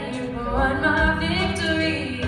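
A woman singing a contemporary Christian worship song into a handheld microphone, holding long notes in the middle of a phrase.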